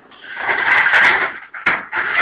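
Sheet metal of a fluorescent light fixture scraping and sliding as it is handled, ending in a single sharp click.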